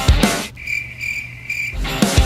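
Rock music with heavy drums cuts out about half a second in, leaving a cricket-chirping sound effect in a few high pulses, the stock gag for an awkward silence, until the music comes back in near the end.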